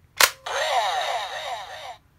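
Sharp plastic click, then a toy Kamen Rider transformation device's electronic sound effect from its small speaker: a rapid run of falling electronic chirps, about five or six a second, that cuts off suddenly.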